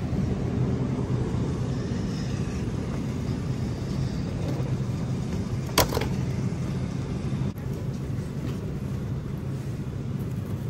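Steady low background rumble, with a single sharp clack about six seconds in as a plastic clamshell of salad greens is set into a shopping cart.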